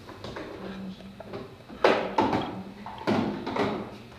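Handling noise from dome rings and parts on a tabletop: two sharp clunks, about two and three seconds in, as pieces are set down and picked up.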